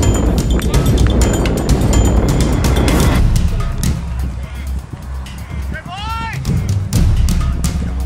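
Loud outdoor sideline sound with heavy low rumble from wind on the microphone; this dense noise cuts off suddenly about three seconds in. A person then gives one rising-and-falling call about six seconds in.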